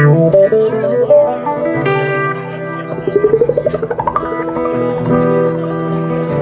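Amplified acoustic guitar played through effects pedals, holding sustained, layered notes. About three seconds in, a warbling sweep rises steadily in pitch for about a second.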